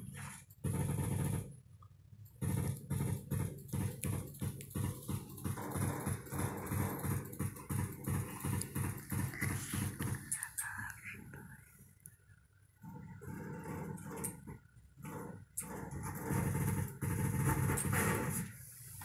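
Tabby cat growling in low, pulsing grumbles while being stroked, in stretches of several seconds with short pauses between. The growl is the sign of a cat annoyed at being handled.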